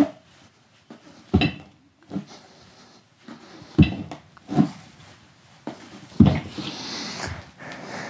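A man breathing hard and sharply in time with swings of a diving weight belt used as a kettlebell. There are several short bursts, roughly a second apart.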